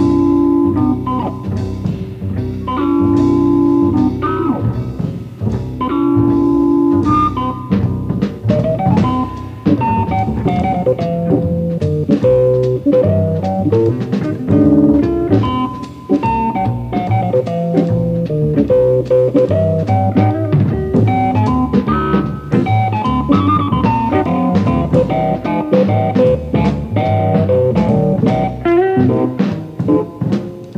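Instrumental rhythm and blues played by a small jazz band led on Hammond organ, with bass and drums. A short held-chord riff sounds three times about three seconds apart, then a solo line of quick running notes takes over.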